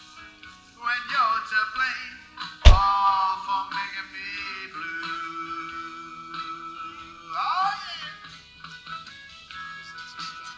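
Live country band playing a slow song: a melody line slides and wavers between notes over steady held low notes. A single sharp drum hit, the loudest sound, comes about three seconds in.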